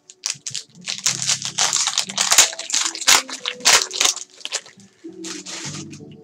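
Foil wrapper of a trading-card pack crinkling and tearing as it is ripped open, a rapid run of crackling rustles that eases off near the end.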